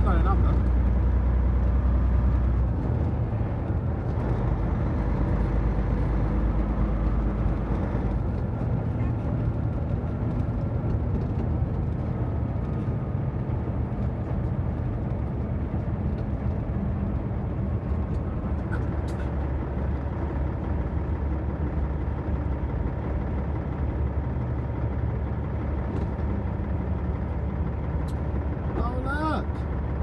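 Truck engine and road noise heard from inside the cab while driving: a steady low drone, whose deepest note drops away about two and a half seconds in.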